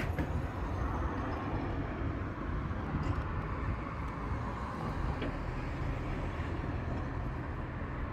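Steady outdoor background noise, a continuous low rumble with no distinct events.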